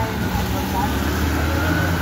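Road traffic: a motor vehicle engine running with a steady low rumble.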